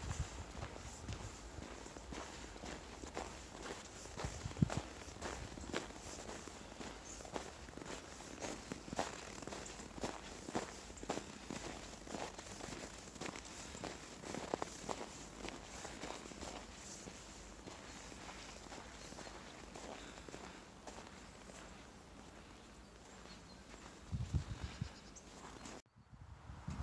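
Footsteps crunching on packed snow at a steady walking pace, about two steps a second, thinning out and growing quieter near the end.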